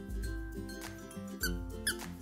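A squeaky plush carrot dog toy squeaks twice, briefly, about a second and a half in and again just before the end, as a Scottish terrier puppy mouths it in a snuffle mat. Background music plays throughout.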